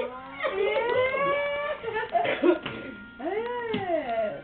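Toddlers' high-pitched squeals and whining cries, long gliding calls that bend up and down; one rises and falls in an arch near the end.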